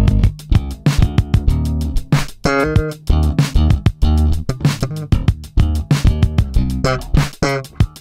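Sterling by Music Man S.U.B. Ray4 electric bass playing a funk line, recorded direct to the board, over an Oberheim DMX drum machine beat with quick, even hi-hat ticks.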